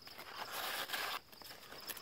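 Rustling of pumpkin leaves and garden weeds as a hand reaches through the foliage and grabs a weed. A dry brushing noise lasts about a second, then fades to fainter rustling.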